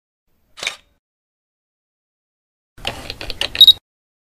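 Camera mechanism sound effect: a single short click about half a second in, then, near the three-second mark, a quick run of ratcheting mechanical clicks ending in a brief high beep.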